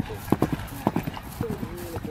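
Hoofbeats of a ridden Galloway show horse cantering on grass, a few sharp strikes in the first second. People's voices talk nearby in the second half.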